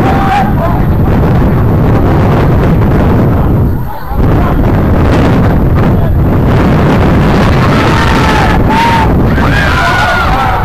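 Wind buffeting the camera's microphone: a loud, rough rumble that drops away briefly about four seconds in. Distant shouting comes through faintly near the end.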